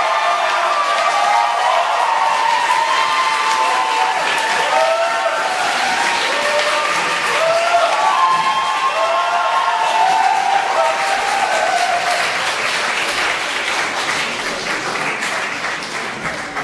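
Audience applauding in a concert hall, with cheering voices calling out over the clapping for most of it. The applause thins and dies down toward the end.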